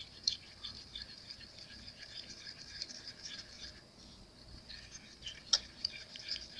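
Stir stick scraping around a small mixing cup as pink flocking powder is mixed into epoxy resin: a faint, irregular scratching, with one sharp click near the end.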